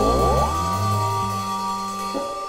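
Live rock band holding out a note near the close of a song: a high sustained note runs throughout, with a quick upward glide in the first half-second and low bass notes stepping underneath, no drums.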